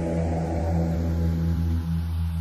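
Closing of an electronic hardstyle track: a sustained low bass drone held steady while the higher sounds above it slowly fade away.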